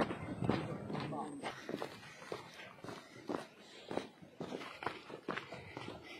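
Footsteps on loose earth and stones as someone walks steadily along a landslide track, a step roughly every half second to a second, with people talking.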